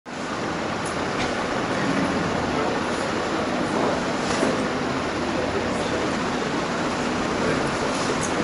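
Steady, even rushing background noise of a hall, with no distinct events standing out.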